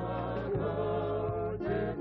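Gospel hymn sung in Shona by voices holding long notes, over a steady bass line and a regular beat.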